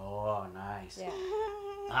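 A man's voice in a drawn-out, half-sung vocalization that slides up and down in pitch, without clear words.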